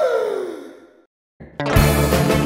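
A cartoon character's voice in a drawn-out falling sigh, the tail of a laugh, fading away within the first second. After a brief silence, upbeat music with a steady beat starts up about one and a half seconds in.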